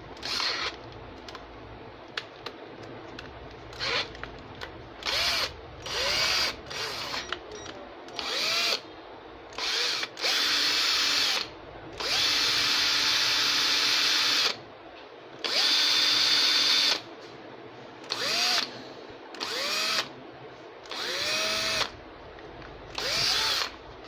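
DCA ADJZ18-10E cordless drill motor run free in the air in a series of short trigger pulls, each spinning up with a rising whine. Three longer runs of one to two and a half seconds come in the middle.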